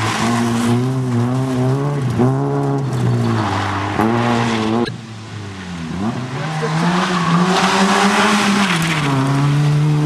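Fiat Cinquecento rally car's engine revving hard, pitch rising and falling with lift-offs and gear changes. About halfway through it fades briefly, then comes back held at high revs before dropping with a gear change near the end.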